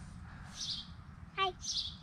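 Birds chirping in the background in two short bursts, one about half a second in and one near the end. A small child says a brief, high-pitched "hi" in between.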